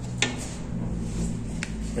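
Two light clicks, a sharp one about a quarter second in and a fainter one near the end, over a steady low hum.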